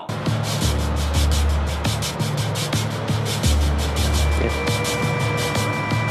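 Tense background music with no speech: a fast, even ticking pulse over low held bass notes, with a few high sustained tones coming in past the middle.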